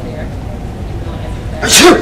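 A man's single loud, deliberately exaggerated sneeze about a second and a half in, a short voiced burst that falls in pitch. It is a fake sneeze put on as a prank. Underneath runs a steady low store hum.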